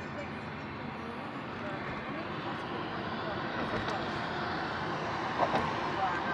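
Steady road noise of a moving car at highway speed, a rush of tyres and engine that grows a little louder, with a brief knock near the end.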